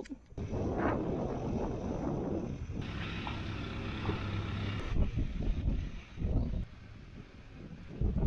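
Wind buffeting the microphone in gusts, with a tractor engine running low underneath.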